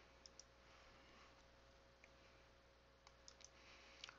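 Near silence broken by a few faint clicks of a computer mouse, two just after the start, one midway and a quick cluster near the end.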